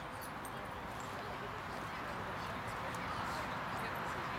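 Indistinct chatter of onlookers mixed with steady outdoor background noise, slowly growing louder; no clash of blades stands out.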